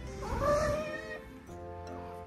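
A Munchkin cat meows once, a call about a second long that rises and falls in pitch. Soft background music plays throughout.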